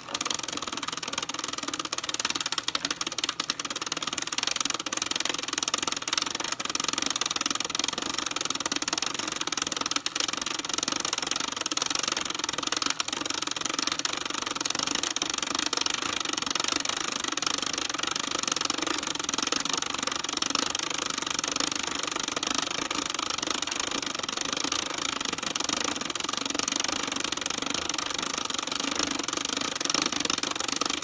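A 1973 Kenner cassette movie projector being hand-cranked. Its plastic film-advance mechanism makes a steady, rapid clatter as the cartoon cartridge runs, starting at once.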